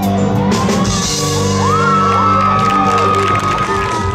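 A live dance band playing held keyboard chords. A voice slides up into one long held high note, a whoop, about a second and a half in.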